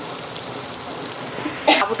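Oil sizzling steadily in a frying pan as boiled potato, green chillies and crushed peanuts fry in it.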